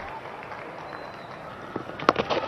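Steady outdoor stadium ambience of a cricket ground during a Test match: an even background hum with no distinct events.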